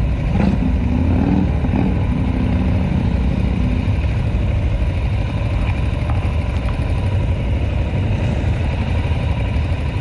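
Motorcycle engines running with a steady, deep rumble at a loud level.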